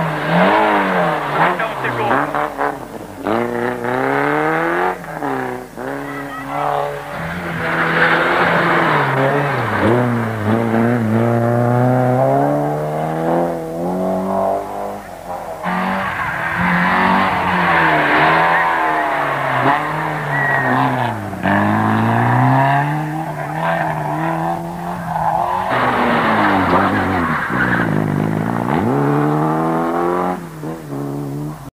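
Rally car engines, Peugeot 205s among them, revving hard through a tight bend one car after another. The revs drop as each car brakes into the corner and climb again as it accelerates away.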